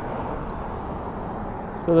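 Steady road traffic noise, an even rush from cars on a nearby street.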